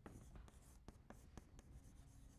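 Chalk writing on a blackboard: a string of faint, irregular taps and short scratches as the chalk strokes across the slate.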